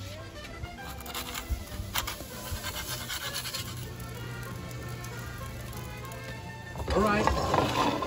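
Quiet background music with a few clicks and scrapes early on. About a second before the end, a louder sizzling starts as a hot cast-iron pan of zucchini is pulled from the wood-fired oven.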